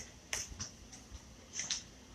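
A few faint, short clicks and taps against quiet room tone, two a quarter-second apart early on and another close pair near the end.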